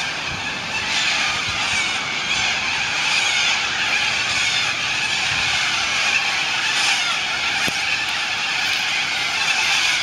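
A large flock of cockatoos calling in the treetops at dusk, many birds at once making a loud, continuous din.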